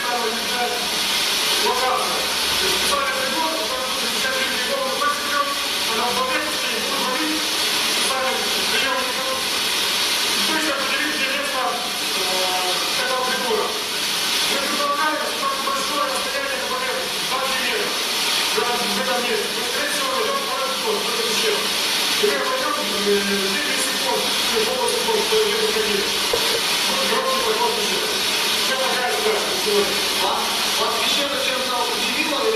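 Indistinct talking under a loud, steady hiss, heard as footage played back through a loudspeaker.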